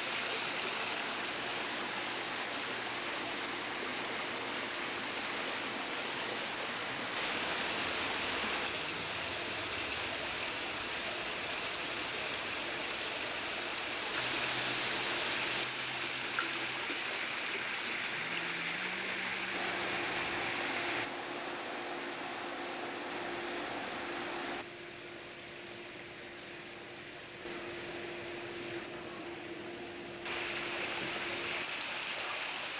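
Water splashing from rock waterfalls into a backyard pool and spa, a steady rushing sound that jumps abruptly in level several times, quietest a little after two-thirds of the way through.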